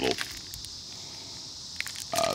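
Faint, steady high chirring of crickets behind a pause in speech.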